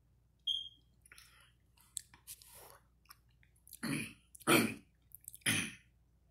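A child's mouth and throat sounds while drinking from a plastic cup: a short squeak and small slurping and swallowing noises, then three loud throat-clearing coughs about half a second to a second apart in the second half.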